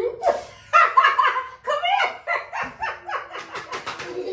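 A woman laughing hard in quick repeated bursts, in a small bathroom.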